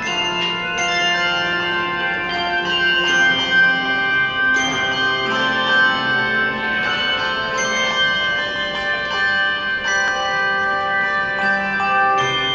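Handbell choir playing a piece: many handbells struck one after another, each note ringing on and overlapping the next.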